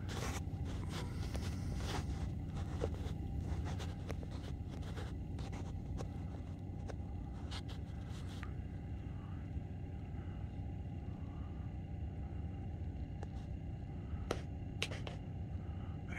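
Steady low outdoor rumble with scattered faint clicks and rubbing from a phone being handled.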